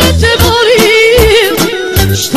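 Serbian pop-folk song: a singer holds one long note with a wide vibrato over a steady bass beat.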